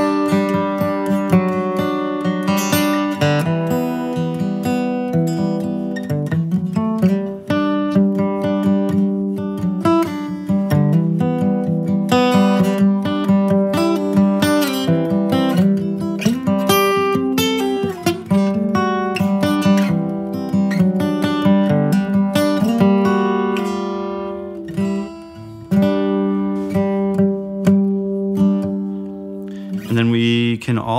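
Steel-string acoustic guitar played with a pick: a continuous improvised line of single notes and triad chord fragments following the chord changes, with some strummed chords.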